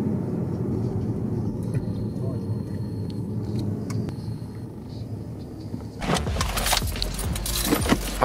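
Car cabin noise while driving slowly: a steady low rumble of engine and tyres. About six seconds in, a louder clattering noise full of clicks takes over.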